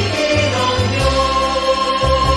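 Choir singing a Tagalog Christmas song with a band: a bass line under it and a light, steady beat. A long note is held from about halfway through.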